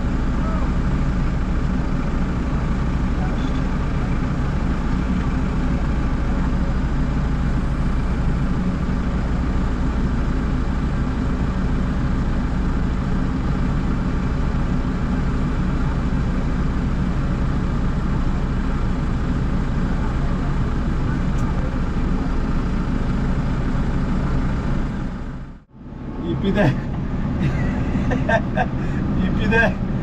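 Front-loader tractor's engine running steadily, heard from inside the cab, with an even low hum. The sound cuts out abruptly for a moment about 25 seconds in, then the engine returns with voices.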